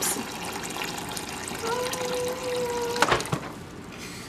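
Cold water running from a refrigerator door dispenser into a glass measuring cup as it fills, with a steady hum for about a second and a half in the middle. The flow stops with a click about three seconds in.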